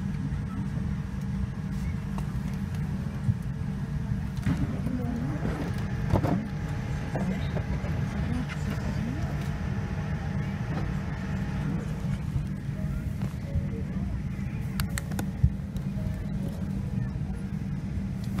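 Steady low rumble of an airliner cabin on the ground, the air-conditioning and engine or APU noise of a Boeing 787-9, with faint passenger voices and a few small clicks.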